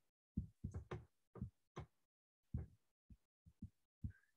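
A series of faint, soft knocks or taps, about eight in four seconds, irregularly spaced.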